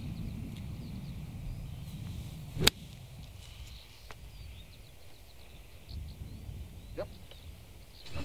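A golf iron striking the ball from the fairway: one sharp crack about two and a half seconds in, over a steady low rumble of wind on the microphone.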